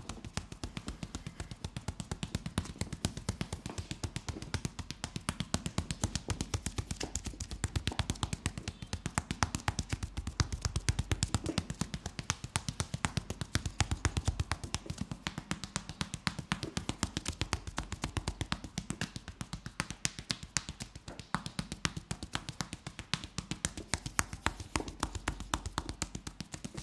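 Fast percussive hand massage on the back and shoulders, the edges of the hands and palms pressed together striking through a T-shirt. It makes a rapid, even patter of light slaps, several a second.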